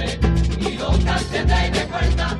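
Instrumental passage of a flamenco-pop carnival comparsa: guitars and percussion playing a steady, driving beat.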